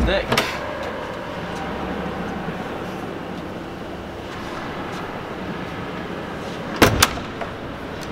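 Two sharp knocks close together near the end, the loudest sounds, as a yacht's door is swung shut and latches, over a steady background hum.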